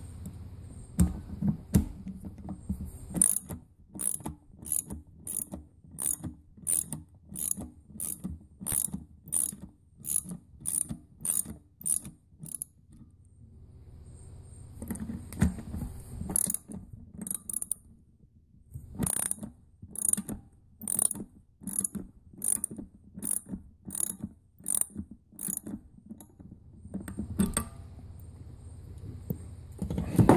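Socket-wrench ratchet clicking in two long runs of sharp, even clicks, about two a second, with a pause of handling noise in between, as a socket turns the top screw of a spring-loaded Bosch air-brake pressure regulator.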